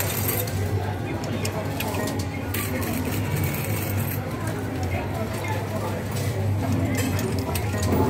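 Amusement arcade din around a coin-pusher ticket machine: background chatter, machine music and a steady low hum, with a few sharp clinks of coins.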